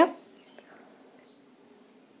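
The last syllable of a man's spoken phrase trailing off in the first moment, then faint, steady room tone and microphone hiss.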